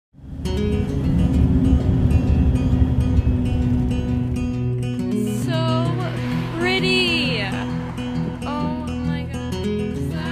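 Music: a song with strummed acoustic guitar, with a singing voice coming in about halfway through.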